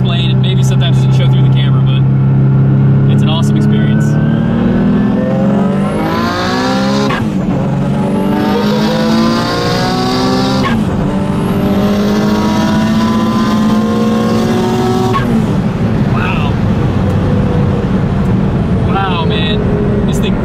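Inside the cabin of a 1200 hp Mitsubishi 3000GT VR-4: its turbocharged V6 runs steadily, then goes to full throttle about four seconds in and revs up through three pulls, the pitch dropping sharply at two upshifts. A hiss climbs with each pull. About fifteen seconds in the throttle closes and the engine settles to a lower, steady cruise.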